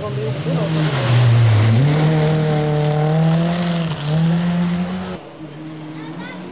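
Rally car engine at full load on a gravel stage: its pitch dips about a second in, then climbs steadily as the car accelerates past, over a hiss of tyres on gravel. The sound stops abruptly just after five seconds.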